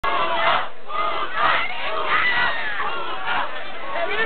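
A large crowd of protesters shouting, many voices at once, swelling and easing every second or so.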